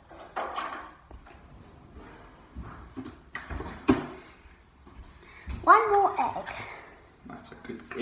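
Brief snatches of talk, the loudest about six seconds in, with a few short knocks and clunks about three to four seconds in.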